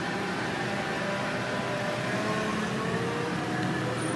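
Steady street noise of running vehicle engines and traffic, with faint tones slowly drifting in pitch.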